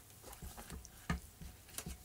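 Cloth towel being tucked over a metal pot, giving faint rustling with a few light taps.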